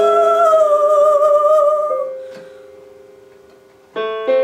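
A woman's voice holding one sung note with a slight vibrato over a sustained digital-keyboard chord; the voice stops about halfway through and the chord fades away, and a new chord is struck right at the end.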